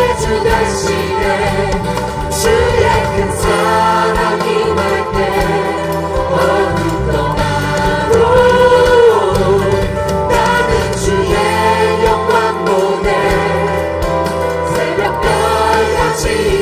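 Church worship team choir singing a Korean praise song together with instrumental accompaniment, the singers clapping along.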